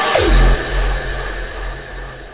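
The end of a hardstyle track: a short falling synth sweep, then a low, held bass note that fades away with no beat under it.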